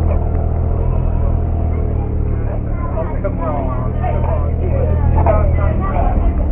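A car engine idling steadily, with people talking over it from about halfway through.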